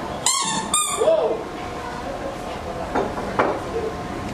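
Two short, sharp, high-pitched squeaks about half a second apart, followed by faint voices.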